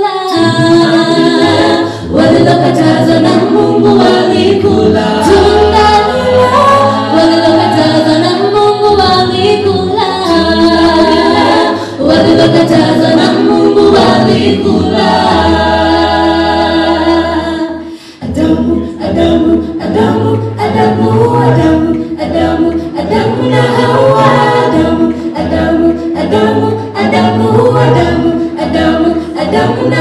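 A cappella vocal group singing in harmony with no instruments, over a deep vocal bass line. About two-thirds of the way through the singing briefly drops away, then comes back with short rhythmic vocal-percussion sounds under the voices.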